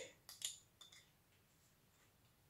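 Three or four faint clinks of a spoon against a small glass jar and a stainless steel bowl as garlic is spooned into minced meat, all within the first second.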